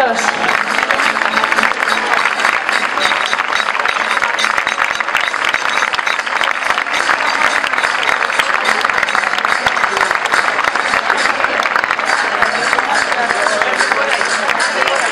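Audience applauding steadily: dense, continuous clapping from a large crowd.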